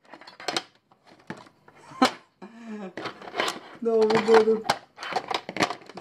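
Small metal tins knocking and clinking against each other and against a plastic refrigerator door shelf as they are picked up and moved by hand: a series of sharp knocks, the loudest about two seconds in.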